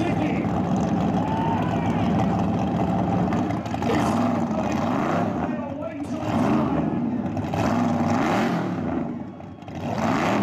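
Burnout car's engine revved in short blips while the car stands still, with a rise and fall in pitch about every second or so through the second half.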